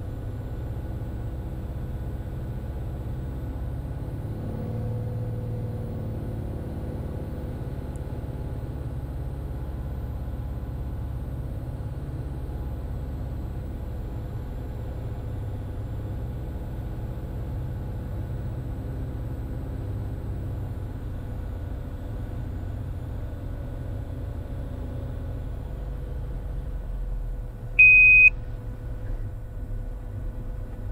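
Cirrus SR20's four-cylinder Lycoming IO-390 engine and propeller as a steady low drone through short final and flare in a crosswind. A short, loud electronic beep sounds near the end, just before touchdown.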